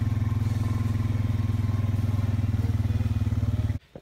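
Engine of a small motor vehicle running at a steady speed as it is ridden, a low, fast-pulsing drone. It cuts off suddenly near the end.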